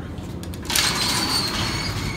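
Collapsible steel scissor gate of a 1965 Otis traction elevator being slid along its track: a metallic scraping rattle with a thin, steady high squeal, starting under a second in.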